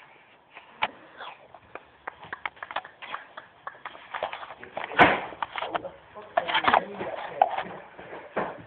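Scattered knocks and clatters with a loud bang about five seconds in, amid scuffling movement and low voices.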